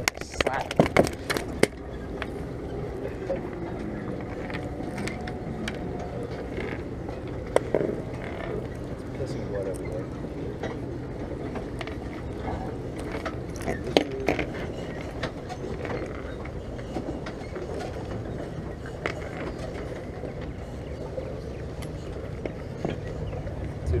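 Steady low outdoor rumble with faint, indistinct voices, and a few sharp clicks and knocks from a small bowfin and pliers being handled on a wooden dock deck.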